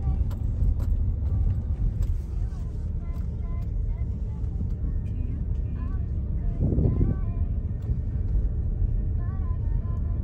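Steady low rumble of an Audi car driving slowly on a dirt road, engine and tyre noise heard from inside the cabin, with a brief louder rumble about seven seconds in.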